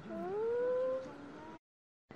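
A single drawn-out call that rises in pitch over about a second and a half, then the sound cuts off abruptly to silence.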